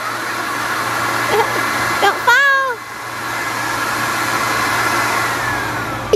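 Handheld leaf blower running steadily, clearing leaves off the edge of a shed roof.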